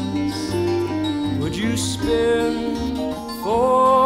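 Live band of acoustic guitar, electric guitar, vibraphone and bass playing a slow ballad, with a male voice holding long, wavering sung notes. Near the end the voice slides up into a louder held note.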